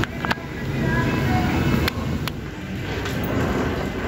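Steady low rumble of terminal-hall noise and handling noise on a handheld camera, with faint distant voices and a few sharp clicks.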